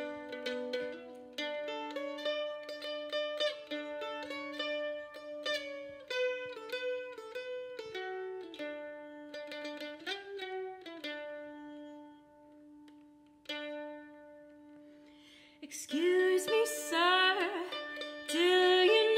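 Solo mandolin picking a melody with ringing notes. The playing thins to a few sustained notes after about twelve seconds. A woman's singing voice comes in over the mandolin near the end.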